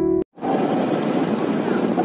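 Background music cuts off in the first moment, then steady wind noise over the microphone and road noise from riding on a moving motorcycle.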